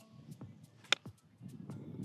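A sand wedge striking a golf ball on a short chip shot: a single sharp click about a second in, over faint low background noise.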